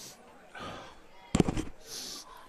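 A quick cluster of sharp pops or knocks about a second and a half in, with soft breathy hiss before and after.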